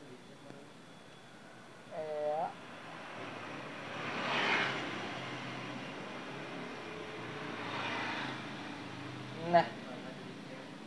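A vehicle passing in the background: a rushing noise swells and fades about four to five seconds in, and again more softly around eight seconds. A brief voiced hum comes about two seconds in.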